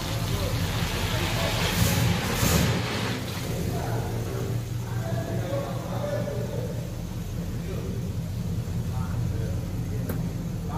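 Oldsmobile 442's engine running with a steady low rumble as the car pulls slowly out of a garage and across a lot, with a brief louder burst about two seconds in.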